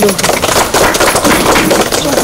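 A string of firecrackers going off: a loud, rapid, irregular run of sharp pops.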